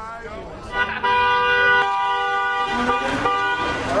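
A car horn held for nearly three seconds, starting about a second in, sounding as a steady chord of several tones.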